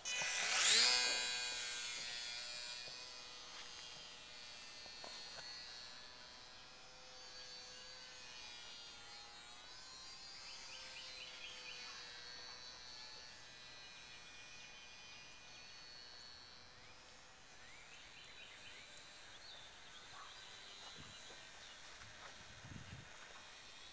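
HobbyZone Champ RC plane's small electric motor and propeller: a buzzing whine that rises sharply in pitch as the throttle comes up about a second in, loudest at that moment. It then settles into a steadier, slightly wavering drone that fades gradually as the plane flies off.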